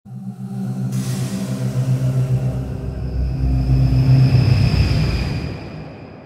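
Logo-reveal intro sting: sustained low synth tones with a rushing whoosh and deep rumble, swelling to a peak about four seconds in and then fading out.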